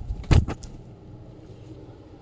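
A brief rustle and knock of a suit fabric piece being handled and spread out, about a third of a second in, followed by faint steady room noise.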